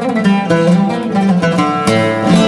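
Oud played with a plectrum in a fast run of short plucked notes, a Turkish longa in makam nihâvend, with a hard stroke near the end that rings on.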